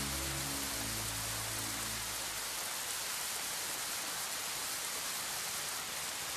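The song's closing sustained keyboard chord dies away about two seconds in, leaving a steady rain-like hiss.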